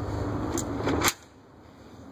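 Glass entrance door clicking shut about a second in, after a fainter click; the steady outdoor background noise cuts off at that moment, leaving a quiet indoor hush.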